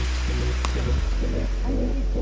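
Background music with a steady deep bass and a continuous electronic-style backing.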